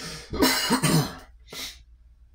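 A man clearing his throat, two short rough pushes about half a second in, followed by a brief breath.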